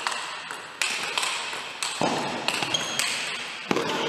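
Table tennis ball being hit back and forth in a fast rally: a rapid series of sharp clicks of the celluloid-type ball off the rubber bats and the table top, several hits a second, each with a short ring of hall echo.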